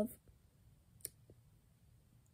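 A woman's voice ends a word right at the start, then near silence with one short faint click about a second in.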